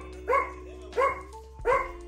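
A small dog barking: three short yaps, evenly spaced about 0.7 s apart.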